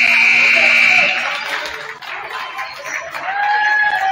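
Gymnasium scoreboard buzzer sounding the end of the third quarter: a loud, steady buzz that cuts off about a second in. Then a mix of voices in the gym.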